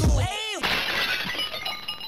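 A hip-hop beat cuts out with a swooping pitch effect. About half a second in comes a sudden glass-shatter sound effect, its tinkling fragments fading away.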